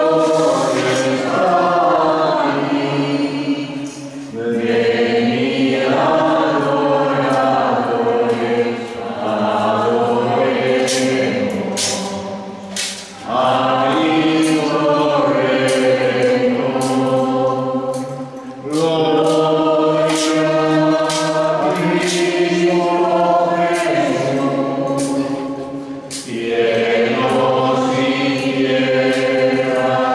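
A group of voices singing a slow hymn in long sustained phrases, with a brief break between phrases about four times.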